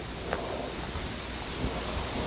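Steady, even background hiss with a faint tick about a third of a second in.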